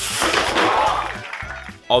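A tall stack of LEGO spring-loaded shooters firing off in one rapid clattering cascade of plastic clicks as a dropped box strikes their triggers, dying away after about a second and a half. Many of the shooters misfire, though every one is hit.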